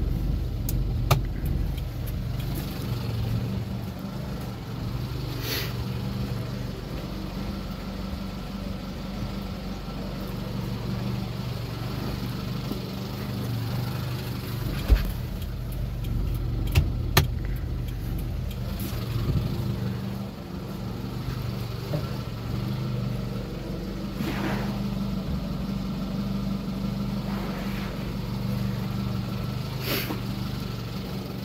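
An engine idling steadily, with a few sharp clicks or knocks over it.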